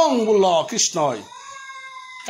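A man's voice in drawn-out, sliding vocal sounds, as in chanting or sung speech. It is followed by a fainter steady held tone for the last part.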